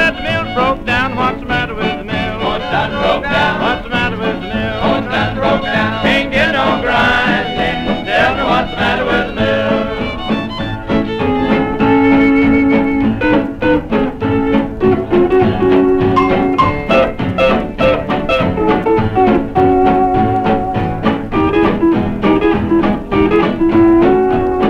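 Western swing band playing an instrumental break on an old 1937 recording with little treble. The melody bends in the first half, then gives way to long held notes.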